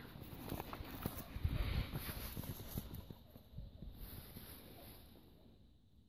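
Footsteps and rustling on dry grass and stubble, with a few soft bumps about a second and a half in; the sounds thin out and fade to near silence near the end.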